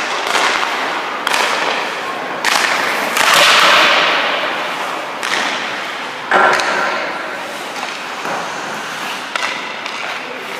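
Ice skate blades scraping and carving across rink ice in a string of sharp pushes and stops, each starting suddenly and trailing off in a hiss, with the echo of a large indoor rink; the loudest and longest scrape comes a few seconds in.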